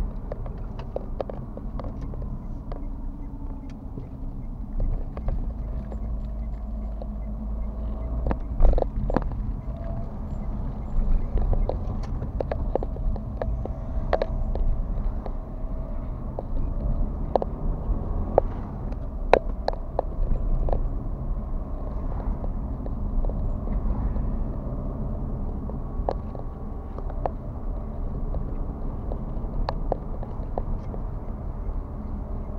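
Car driving, heard from inside the cabin: a steady low rumble of engine and road, with irregular clicks and knocks scattered through it.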